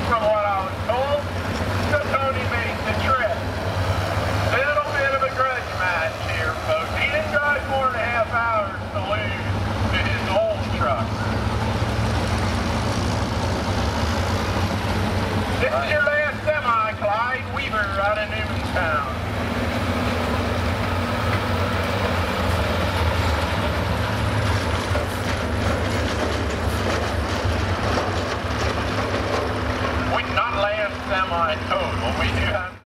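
Diesel engine of a Peterbilt semi truck running under heavy load as it pulls a weight-transfer sled, a steady low drone throughout. A voice talks over it in the first few seconds and again around the middle.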